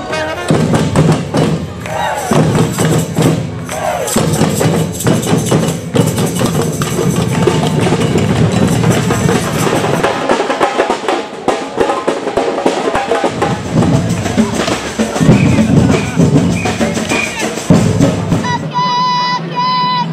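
A parade drum troupe beating drums with mallets in a dense, loud rhythm, with a crowd audible beneath. Near the end the drumming gives way to music with held, pitched notes.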